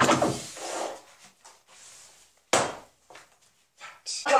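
Card and paper rustling as a printed cardboard album insert is slid out of its sleeve, fading within the first second. A single sharp knock comes about two and a half seconds in, as the card is set down on the desk, followed by a few faint light clicks.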